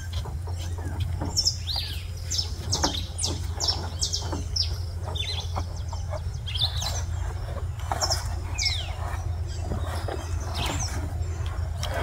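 Wild birds chirping repeatedly, a quick run of short, sharp, downward-sliding calls every second or so, over a steady low hum.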